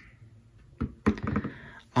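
Smartphones in rubbery protective cases handled and set down on a wooden tabletop: a few short knocks, with a brief clatter of taps a second in.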